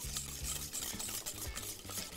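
Stirring a thick mixture of white sauce, beaten egg and cheese in a small stainless steel saucepan, with a steady rubbing against the pan.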